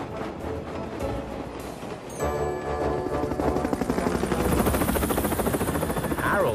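Helicopter rotor chopping sound effect that starts about two seconds in and grows louder, over background music.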